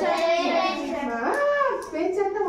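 Children's voices drawn out in a sing-song chant, pitch rising and falling with one long held note past the middle: a class answering in chorus.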